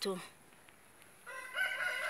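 A rooster crowing: one long, drawn-out call that starts a little over a second in and is still going at the end.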